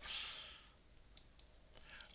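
A soft breath out, then a few faint computer mouse clicks.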